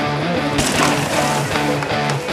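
Background rock music with guitar, with a steady beat.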